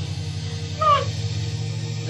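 Background film score: a steady low synth bass tone under a wailing woodwind-like melody, one note sliding downward about a second in.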